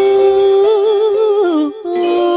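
A woman's voice humming a long held note that starts to waver with vibrato, then slides down and breaks off; a new wavering note begins near the end. No instruments play under it.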